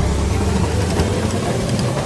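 Video slot game sound effect for the last reels spinning under a bonus-anticipation effect: a steady, loud rumbling noise.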